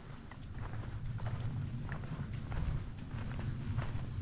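Footsteps on a path, a few irregular steps a second, over a steady low rumble.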